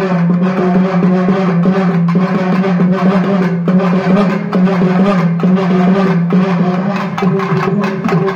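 Live festival music: drums beaten in a steady rhythm over a loud, sustained droning note that shifts pitch slightly now and then.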